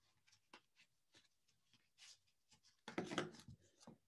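Mostly near silence, with faint light ticks and rubbing as yarn and a wooden weaving stick are worked by hand through the warp of a small cardboard loom, and a brief louder rustle about three seconds in.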